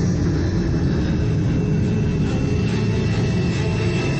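A steady, deep car-engine rumble mixed into the advert's soundtrack, with held high tones above it.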